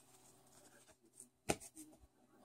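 Faint handling of 7-inch vinyl singles in paper sleeves, as one record is set aside for the next: a sharp click about one and a half seconds in, followed by a few soft rustles.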